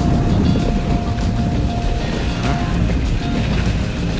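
Wind rushing over the microphone of a moving snowkiter's camera: a steady low rumble. Background music with a held note plays under it.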